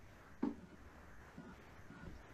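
Quiet room tone with a single short, soft knock about half a second in.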